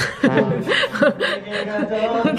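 Human laughter: quick, choppy bursts of chuckling.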